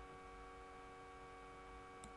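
Near silence: a faint, steady electrical hum made of several fixed tones over a low rumble.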